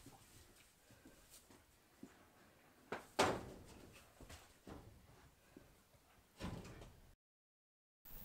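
A barn door being worked: faint knocks and scrapes, the loudest about three seconds in with a short ringing tail and another near the end, with quiet between; the sound cuts to silence just before the end.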